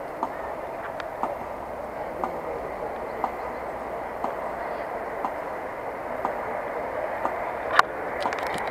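Slow, even ticks about once a second, like a metronome beating, over the steady background noise of a large outdoor crowd; one sharper click near the end.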